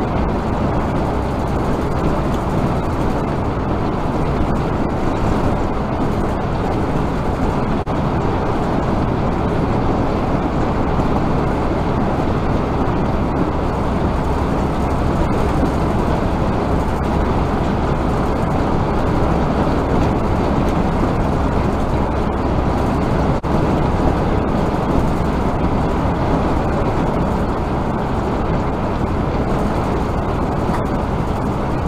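Steady road and engine noise of a vehicle cruising at highway speed, picked up by a dash cam inside the cab, with a couple of faint ticks.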